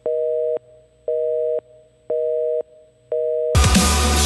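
Telephone busy signal: a steady two-note tone beeping four times, about once a second, with silence between the beeps. Loud dubstep music with heavy bass cuts in near the end.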